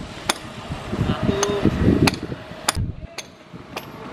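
Construction workers hammering by hand, a steady run of sharp strikes a little under two a second, with workers' voices in the background.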